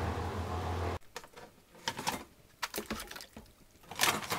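Water splashing and sloshing in a washing-up bowl of soapy water, a few short irregular splashes, coming in after an abrupt cut about a second in from a steady low rumble and hiss.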